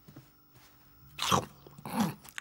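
A short animal-like vocal sound with a falling pitch about a second in, then a briefer one near the end, after a quiet start with a few faint clicks.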